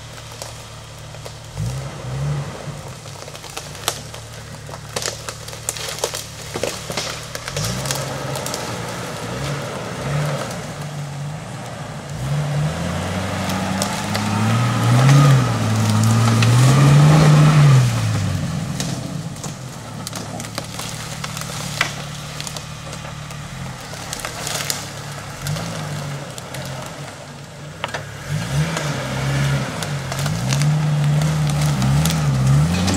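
Jeep Wrangler TJ's engine pulling at low revs as it crawls through a ditch, with the revs rising and falling several times in the middle, where it is loudest. Dry sticks and leaves crackle and snap under the tyres throughout.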